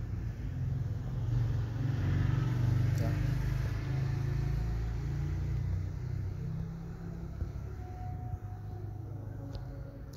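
Steady low background rumble with a faint hiss above it, running under the narration and never changing much.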